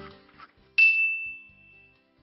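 Closing music fades out, then a single bright chime dings once and rings on one high tone, dying away over about a second: a sound sting for the channel's logo.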